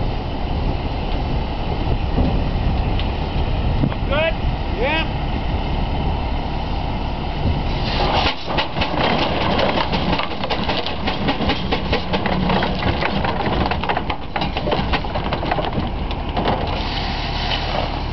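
Waterloo 25 steam traction engine running as it drives up onto a trailer. A steady low rumble gives way, about eight seconds in, to a dense string of mechanical knocks and clanks.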